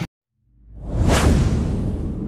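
Whoosh transition sound effect: after a moment of dead silence it swells up about half a second in, peaks about a second in with a sweep falling in pitch over a low rumble, then slowly fades.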